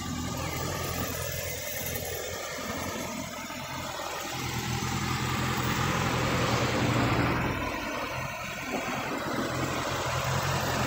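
Kawasaki ZX-6R's inline-four engine idling steadily.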